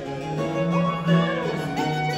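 Baroque chamber ensemble playing: baroque violin over a continuo of viola da gamba, theorbo and harpsichord.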